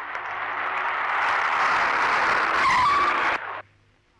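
A car's tyres skidding on pavement as it pulls up, a sustained rush of tyre noise with a short squeal near the end, then cutting off suddenly.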